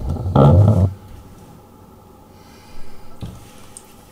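A person's loud, short breath out, like a snort, close to the microphone, about half a second in, followed by faint handling sounds.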